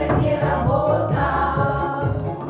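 A women's vocal group singing together over accompaniment with a steady beat.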